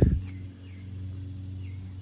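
Outdoor background: a steady low hum, with a few faint short chirps over it.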